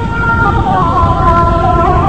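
Gasba, the end-blown cane flute of Chaoui music, holding long notes that step between pitches in an ornamented melody, over a dense low rumble.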